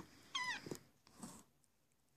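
A single short, high-pitched cry, under half a second long, that wavers and then falls in pitch at its end.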